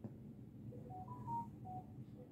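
A short electronic chime of about five quick beeps, climbing in pitch and then dropping back, after a faint click at the start.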